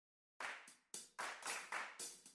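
Intro music opening with a string of sharp clap-like percussive hits, about five of them, each fading quickly, starting just under half a second in.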